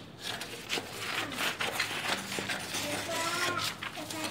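Scissors cutting a brown kraft-paper pattern, with short crisp snips and the paper rustling as it is handled.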